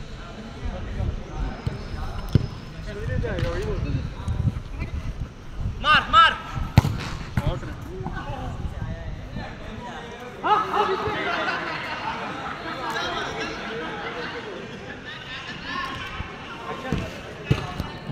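A football being kicked on an artificial turf pitch, with scattered sharp thuds, among players shouting to each other. Loud shouts come about six seconds in, and from about ten seconds on several voices call out at once.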